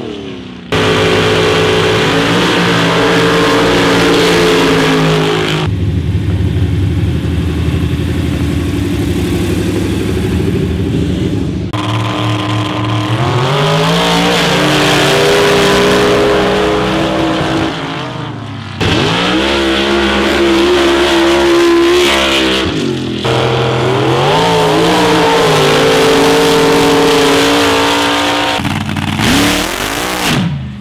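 Mud drag trucks and buggies running hard down a mud pit, their engines revving up and rising in pitch under full throttle. The sound jumps abruptly between separate runs several times.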